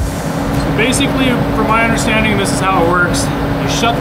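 A man talking over the loud, steady drone of a forced-air torpedo heater running in the shop, with a constant hum under it.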